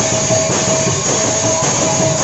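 Large brass hand cymbals clashing continuously in a dense metallic wash, with a rope-laced double-headed barrel drum beating underneath, loud and unbroken.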